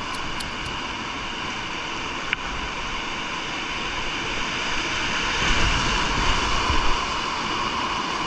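Whitewater rapid rushing close to a kayak-mounted action camera, a steady hiss that grows a little louder about five seconds in, with a faint tick just past two seconds.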